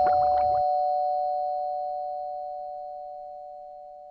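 Two-note 'ding-dong' doorbell chime, a higher note followed by a lower one, both ringing on together and slowly dying away.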